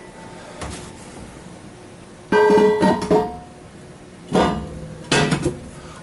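Metal bell housing shield set down over the clutch assembly on the dyno's metal plate: a loud clank about two seconds in that rings on for about a second, then a few lighter knocks near the end.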